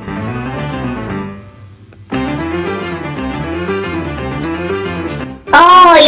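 Cartoon background music with sustained pitched notes. It fades out about a second in, returns about two seconds in, and is cut across near the end by a loud voice.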